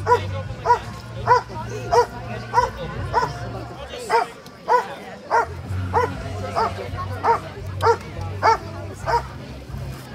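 German shepherd police dog barking over and over at an even pace, about one and a half barks a second, while held back on a leash, eager to be let go for bite work.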